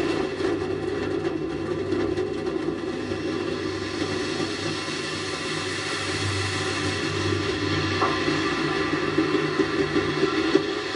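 Steady rushing rumble with a low droning hum, recorded by the onboard camera of a space shuttle solid rocket booster tumbling after separation.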